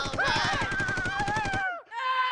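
Several people crying out in fright with wavering, drawn-out wails over a fast rattle of about fifteen hits a second, like a comic drum roll. Both cut off suddenly near the end.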